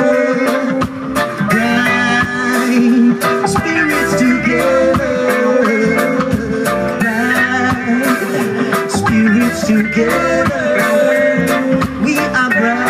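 Live roots reggae band playing: electric guitars, bass guitar, drum kit and keyboards over a PA, with steady regular drum strikes.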